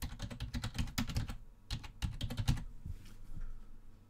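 Typing on a computer keyboard: a fast run of keystrokes that thins out and grows quieter over the last second or so.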